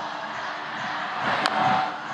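Ballpark crowd noise, then a single sharp crack of a wooden bat hitting a pitch about one and a half seconds in. The crowd swells around the hit.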